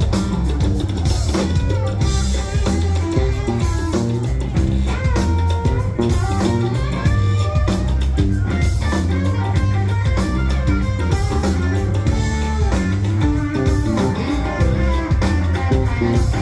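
A blues-rock band playing live with no vocals: an electric guitar lead with bent notes over bass guitar and a drum kit keeping a steady beat.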